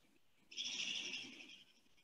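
A faint, high bird call: one steady note lasting about a second, starting about half a second in.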